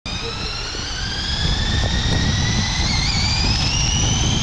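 Electric motors of a motorized LEGO Technic 42172 McLaren P1 (eight motors, four per rear wheel) whining as the model drives, the pitch rising steadily as it speeds up, over a low rumble.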